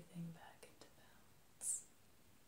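A woman's soft voice whispering: a low voiced murmur fades out at the start, then a short breathy 'sh' hiss comes about one and a half seconds in. Two faint clicks fall between them.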